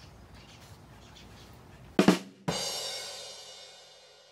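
A short drum sting: about two seconds in, two quick drum hits, then a cymbal crash that rings and slowly fades.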